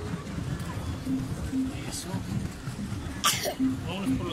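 Pedal boat moving across a pond: a steady low churning of water under the hull, with indistinct voices in the background and a short breathy burst about three seconds in.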